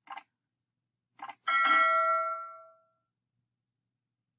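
Subscribe-animation sound effect: a single mouse click, then a little over a second later a quick double click followed by a bright bell ding that rings out and fades over about a second.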